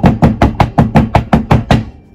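Silicone loaf mould full of freshly poured soap batter rapped repeatedly on a wooden table: a loud, rapid run of knocks, about five or six a second, stopping just before the end. Tapping the mould like this settles the batter and knocks out air bubbles.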